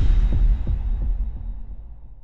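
Deep bass boom of an intro sound effect that fades out over a couple of seconds, with a few low pulses in its first second.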